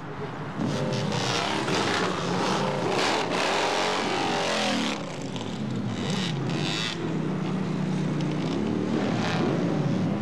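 Motorcycle engine revving, its pitch rising and falling repeatedly, then running more steadily as the bike rides off.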